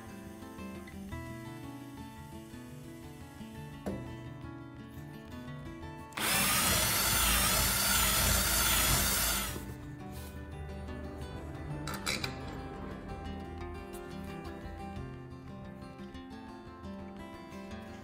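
A power drill runs for about three and a half seconds, starting about six seconds in, boring a hole through the wooden bow for a long bolt to hold a stainless bow roller. Background guitar music plays throughout.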